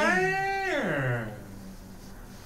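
A single drawn-out wordless vocal sound from a person, rising and then falling in pitch and lasting about a second and a half.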